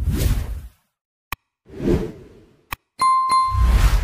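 Outro sound effects for an animated end card: two whooshes with deep low booms, separated by short sharp clicks. About three seconds in comes a bright bell-like ding, followed by another low boom.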